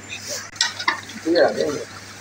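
A metal spoon stirring chicken karahi gravy in a large aluminium pot, scraping and giving a few light knocks against the pot.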